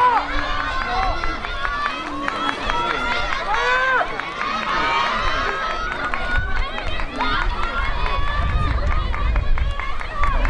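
Spectators at an athletics track shouting and calling out to the runners, many high-pitched voices overlapping. A low rumble builds in the last couple of seconds.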